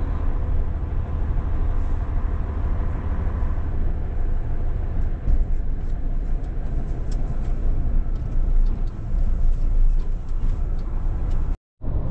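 Large truck's diesel engine and cab noise heard from inside the cab while it moves at low speed: a steady low rumble. The sound breaks off for a moment near the end.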